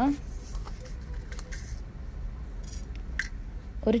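Mustard seeds sizzling in hot oil in a frying pan, with a steady low hiss and scattered small pops and crackles as the seeds begin to splutter.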